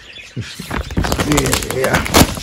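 Grow-tent cover sheet rustling and crackling as it is pulled shut and pressed onto its velcro fastening, a dense run of crackles starting under a second in.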